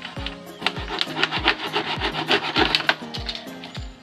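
A knife sawing through the thin plastic of a water bottle: a rasping scrape in quick back-and-forth strokes, thickest from about a second in until near the end, over background music with a steady beat.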